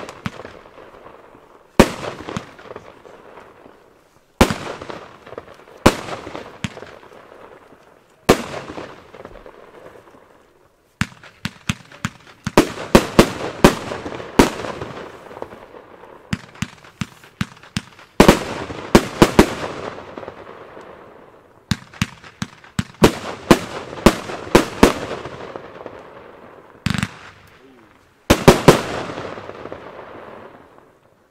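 Blackboxx Schneeröschen fireworks battery firing aerial shots, each sharp bang followed by a fading tail of burst noise. It starts with single shots a second or two apart, then from about eleven seconds in fires quick volleys of several shots at a time, ending shortly before thirty seconds.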